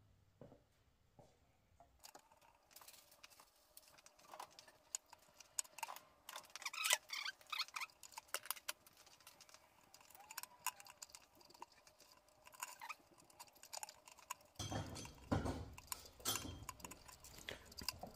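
Faint, irregular clicks, taps and rattles of small plastic and metal parts being handled while the fuel filter is worked out of a Harley-Davidson Road Glide's fuel tank.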